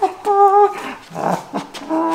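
A high, wordless, whining voice from the costumed witch casting a spell: two drawn-out tones, the second starting near the end, with a breathy sound between them.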